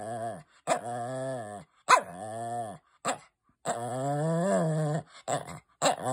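Small long-haired dog 'talking': several drawn-out, growl-like moans that waver up and down in pitch, the longest in the middle, broken by a few short sharp yips.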